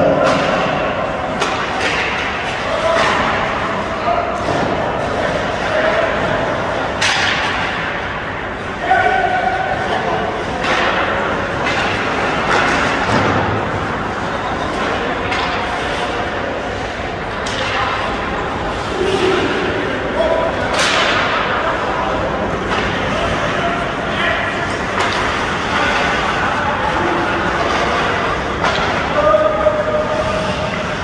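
Ice hockey play on a rink: many sharp cracks and thuds of sticks and the puck striking the ice and boards, the loudest about 7 and 21 seconds in. Scattered shouts from players and spectators run through it.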